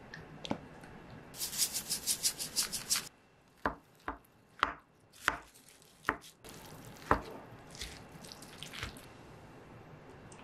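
A bowl of bibimbap being dressed and stirred: a quick run of even rattling strokes, about six or seven a second for under two seconds, then a spoon knocking against the bowl about six times as it works through the toppings.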